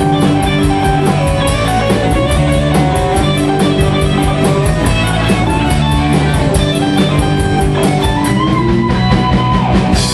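Live rock band playing an instrumental break: electric guitars holding and changing notes over a drum kit with a quick, steady cymbal beat. One guitar note bends upward near the end.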